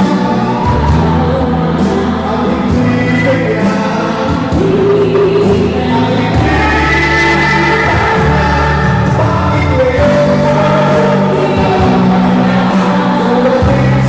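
Music: a song sung by many voices together over accompaniment with a steady beat.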